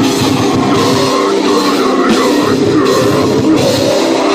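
Live heavy metal band playing loud: distorted electric guitar over a pounding drum kit, with a high line wavering up and down through the middle.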